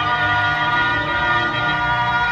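A school wind band playing a sustained, full-band passage of held chords. It comes from an old cassette tape transfer with considerable wear, dull and without any high treble.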